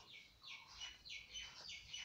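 Felt-tip marker stroking across paper as capital letters are written: short, faint scratchy strokes, about three a second.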